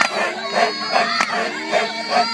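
Maasai men chanting together for the jumping dance: a group of deep, grunting voices in a repeated pattern of about three beats a second, with one sharp knock about a second in.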